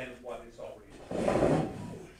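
Low talk, then a chair scraping for about half a second as a man sits down at a table.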